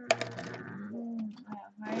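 A sharp clink of a small hard object, the loudest sound here, right at the start. A woman's voice holds a drawn-out word just after it.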